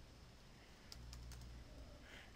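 A few faint keystrokes on a computer keyboard as a number is typed in.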